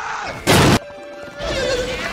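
Cartoon explosion sound effect: one sudden, very loud blast about half a second in, lasting a fraction of a second. It comes between wavering pitched cries, one at the start and one near the end.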